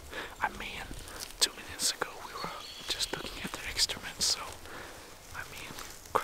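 A man whispering, in short hushed bursts of breathy, hissing speech.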